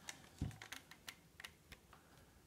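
Faint, light clicks and taps of nail-stamping tools being handled on a desk, with one duller knock about half a second in.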